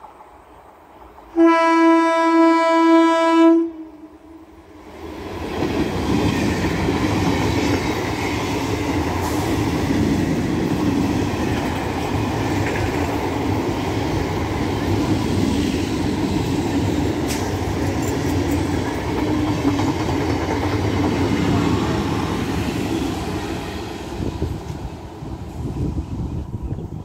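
Electric multiple-unit (EMU) local train sounding its horn in one long single-pitched blast of about two seconds, then passing at high speed, its wheels rumbling and clattering over the rails for about twenty seconds before easing off near the end.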